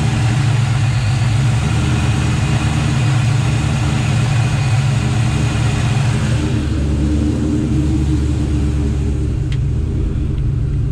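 Ford Mustang Mach 1 V8 idling steadily, heard close up under the open hood.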